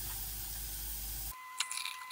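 Blended star fruit juice being poured through a fine metal mesh strainer into a glass pitcher: a faint trickling hiss with a few light clicks, starting a little past halfway, over a thin steady tone. Before that only a faint steady hiss.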